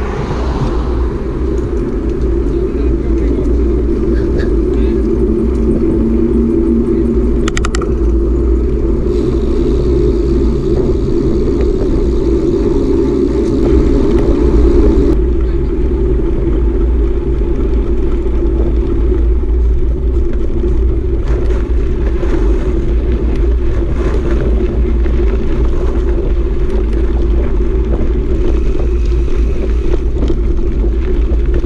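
Wind rushing over the microphone of a bicycle-mounted camera, with tyres rumbling on the road, a steady loud roar while riding. It swells briefly about halfway through.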